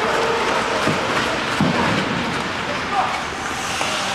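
Bandy players' skate blades scraping and hissing on the ice of a large indoor rink, with players' calls echoing in the empty arena. A couple of sharp knocks of sticks striking the ball come about one and a half and three seconds in.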